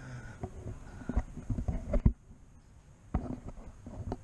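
A few low knocks and bumps from gear and the camera being handled, the loudest just after two seconds in and another a little after three seconds.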